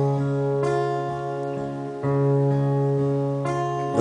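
Guitar chords strummed and left to ring between sung lines, a new chord struck about every one and a half seconds.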